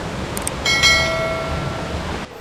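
A click followed by a bell-like 'ding' sound effect for a subscribe-button animation, ringing out and fading over about a second, over a steady rushing outdoor hiss.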